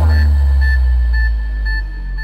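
Loud electronic music played through a large outdoor 'horeg' sound system. One long, very deep bass note is held and slowly fades, while short high beeps repeat over it about three times a second.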